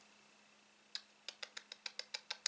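Faint, quick light clicks, about six a second, starting about a second in after near silence, from handling a hard plastic eyeshadow palette.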